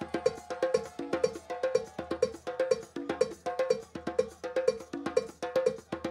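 Live hand drumming on djembe and conga over dance music, driven by a fast, even pattern of pitched, ringing percussion strokes at about four a second.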